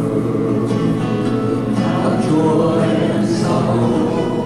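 Live acoustic folk music: an acoustic guitar strumming under several voices singing together in held notes.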